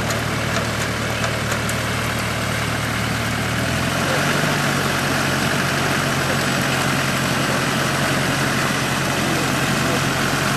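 A four-wheel-drive's engine idling steadily, its revs stepping up a little about four seconds in and then holding at the higher speed.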